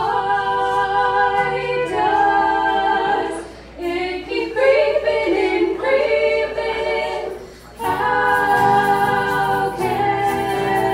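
Women's voices singing long held notes in close harmony, in three phrases with short breaks about four seconds in and near eight seconds in, over acoustic guitar and keyboard accompaniment.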